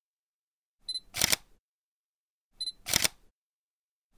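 Camera shutter sound, twice about 1.7 s apart: each time a short high autofocus-style beep, then the sharp click of an SLR shutter, with silence between.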